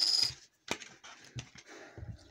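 A flipped Pokémon TCG coin rattling to rest on a hard tabletop, its high ringing note stopping suddenly a moment in. Then come a few faint clicks and taps of hands handling it.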